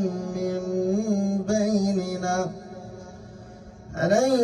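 A man's voice chanting Quran recitation (tajwid) in the Hamza reading, drawing out long held notes into a microphone. The note changes about a second and a half in, and the voice stops for a breath pause about two and a half seconds in.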